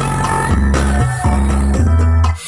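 DJ dance music played loud through a large stacked-speaker sound system, with a heavy bass line of held low notes that change about every half second.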